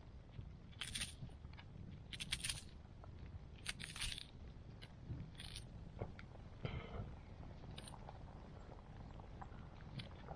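A knife slicing through a fresh cucumber held in the hand: faint, crisp cuts, about six of them at irregular intervals.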